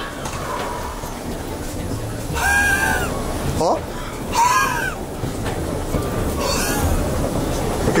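Steady low rumble and clatter of passengers and their luggage moving through an airport jet bridge, with voices and short exclamations over it.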